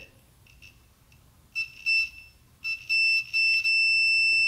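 Multimeter continuity buzzer beeping with a high steady tone, first as a few short broken beeps from about halfway, then holding steady near the end. This is the normally closed pressure switch making contact again as the air pressure bleeds off, cutting in and out at first before it stays closed.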